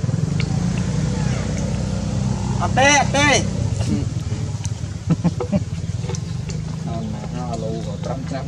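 A motor engine running steadily underneath, with a quick run of short, high, arching chirps about three seconds in and a few fainter ones later.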